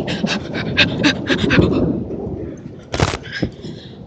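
A person panting rapidly, quick breaths about six a second that fade after about two seconds, followed by a single sharp thump about three seconds in.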